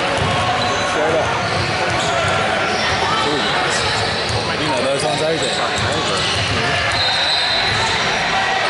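A basketball bouncing on the hardwood court floor around the free-throw line, over constant chatter from spectators and players.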